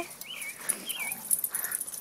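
A dog giving two short, high, wavering whines about a second apart while tugging on a stick with another dog in play.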